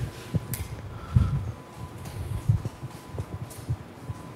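Soft, irregular low thuds and light rustling of a person moving about, footsteps and clothing, with a faint steady hum behind them.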